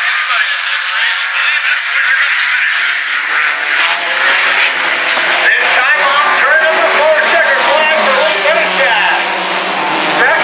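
Sport compact race cars running on a dirt oval, their four-cylinder engines revving up and down through the corners. The sound grows louder from about four seconds in as the cars come past.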